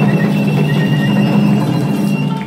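Japanese folk ensemble music: a transverse bamboo flute holds a high, slightly wavering note over rapid strokes on hand-held fan drums.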